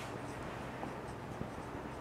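Whiteboard marker writing on a whiteboard: faint scratching strokes over a low, steady room hum.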